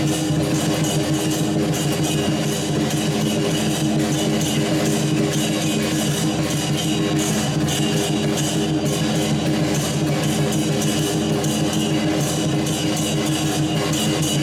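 Rock-style music with guitar, playing at a steady level with a dense, even beat and no pauses.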